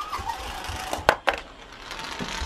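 A Malteser rolling down a long stretched tape measure: quiet rolling and handling noise, with two sharp clicks in quick succession a little over a second in.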